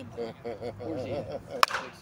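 California Senior Bat Company 'Little Mexican' 2024 slow-pitch softball bat hitting a pitched ball once, late on: a single sharp crack with a short ring.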